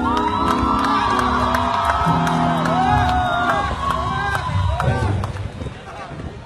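Live concert music through a phone microphone: the band holds its final notes while the crowd sings and cheers, and it fades out about five seconds in.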